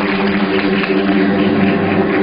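Audience applause over the opening of a backing music track: a low chord held steady, without singing yet.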